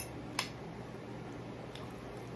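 Two short clicks, the second louder, a little under half a second apart, over a faint steady low hum.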